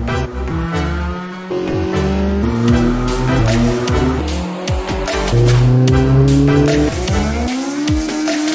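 Background music mixed with a race car's engine revving, its pitch climbing through rising pulls, twice.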